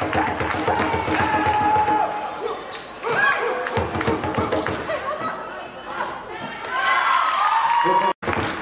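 Sounds of a basketball game in a sports hall: a basketball bouncing on the hardwood court, with voices calling out and the sounds carrying in the big room.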